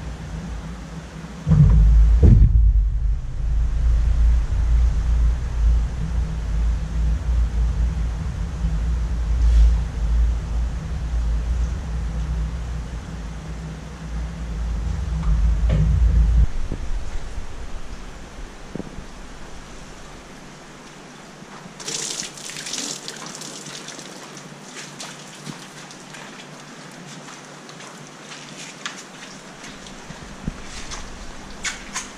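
Water in a large aquarium churned by a person netting a big fish, heard as a loud, low, muffled rumble with thumps. The rumble dies away about sixteen seconds in. A few seconds later water splashes and drips with a crackly patter.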